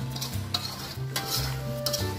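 Chicken in a thick spice and coconut-milk paste being stirred and scraped in a metal wok, with a light sizzle from the pan. There are about three scraping strokes, one roughly every two-thirds of a second.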